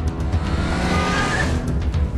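Car tyres squealing for about a second in the middle, over music with a fast, even ticking beat.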